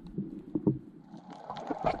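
Muffled underwater water noise picked up by a camera: irregular low rumbling with scattered clicks and knocks, growing busier near the end.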